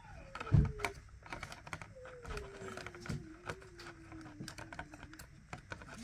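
Irregular light clicks and taps from hands handling a small acrylic diamond-painted lamp while it is switched on, with a low thump about half a second in.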